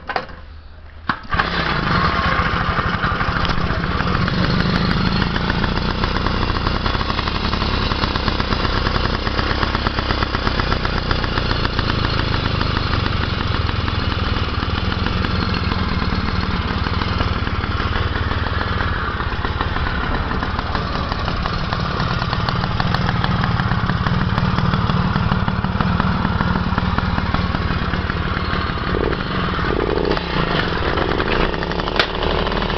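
Puch Pinto moped's small two-stroke single-cylinder engine being started, catching about a second in and then running steadily.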